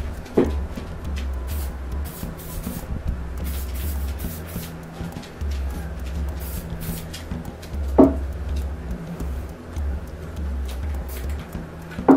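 Short, irregular bursts of hiss from an aerosol can of red Rust-Oleum spray paint being sprayed, over background music with a steady bass. Two sharp knocks stand out, one just after the start and a louder one about two-thirds of the way through.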